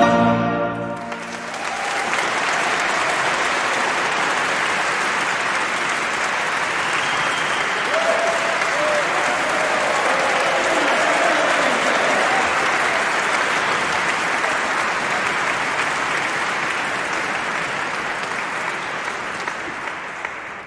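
A piece of music ends in the first second, and a large audience breaks into steady applause that slowly tapers off toward the end.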